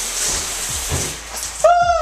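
Shower spray running with a steady hiss, then about one and a half seconds in a man lets out a loud, high yelp that falls in pitch as the water hits him.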